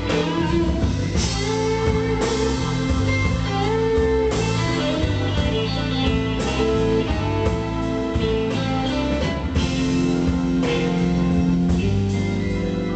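Live instrumental electric blues: a lead electric guitar plays a line with bent notes over electric bass, drums and keyboard.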